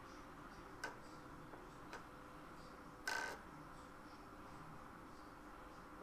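Quiet room hiss with a faint steady hum, broken by two soft clicks about one and two seconds in and a brief rustle about three seconds in: handling noise from a small quadcopter being tilted about by hand.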